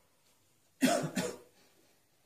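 A person coughs twice in quick succession about a second in.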